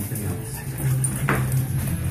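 English bulldog making short vocal sounds while playing, with one sharper sound about a second and a half in; television speech runs underneath.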